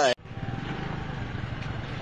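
Steady outdoor street noise, a low rumble with hiss, that cuts in abruptly just after a man's voice stops.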